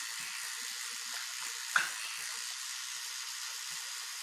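Rotating electric toothbrush running steadily while brushing teeth, with one sharp click a little under two seconds in.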